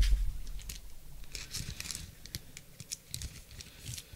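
Faint, irregular clicks and rustles of trading cards and plastic card holders being handled on a table, a little louder just after the start and sparser later.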